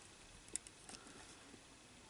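Near silence, with a few faint small clicks, about half a second and a second in, from handling a potentiometer as it is turned with a test probe pressed against it.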